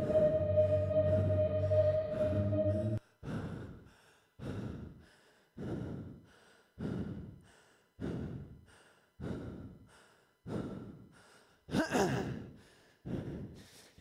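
A rock song ends abruptly about three seconds in. Then a person breathes hard, winded from exercise: deep exhales about once every 1.2 seconds, with one louder, voiced gasp near the end.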